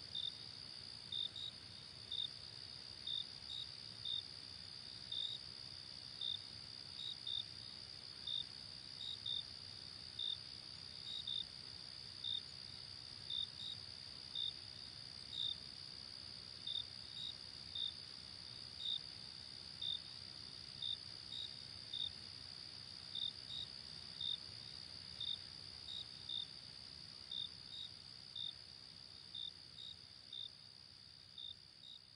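Crickets chirping: a steady high trill under short repeated chirps, a little under two a second, growing slightly fainter near the end.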